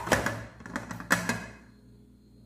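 A few knocks on an upturned aluminium tube cake pan, each ringing briefly, to free the baked cake from the pan.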